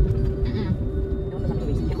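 Low, steady rumble of a car driving, heard from inside the cabin, with a person's voice briefly over it about half a second in.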